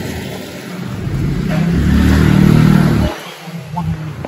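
A vehicle's engine passing close by on a street, swelling to its loudest about two seconds in, then cutting off abruptly a little after three seconds.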